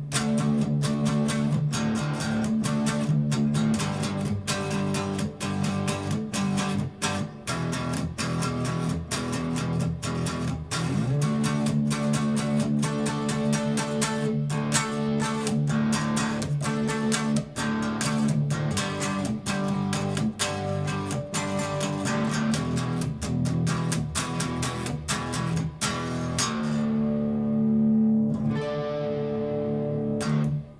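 Electric guitar in drop D tuning playing a rhythmic riff of power chords, each fretted with one finger across the three low strings, picked in a steady run of strokes. Near the end a chord is left to ring out.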